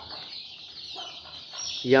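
Young chickens cluck quietly while pecking at a tomato held against the cage wire.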